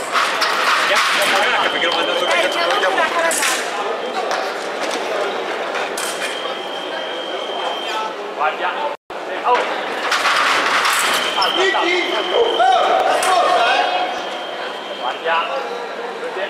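Electric sabre scoring machine sounding a steady high beep three times as touches land, the last one held about four seconds, among shouting voices and sharp clicks of blades and footwork.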